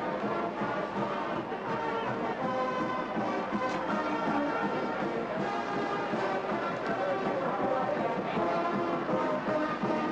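Brass band music playing steadily, with many held notes sounding together.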